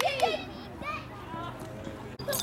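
Children shouting and cheering: a loud, rapidly repeated high-pitched cheer that stops about half a second in, followed by fainter scattered children's voices.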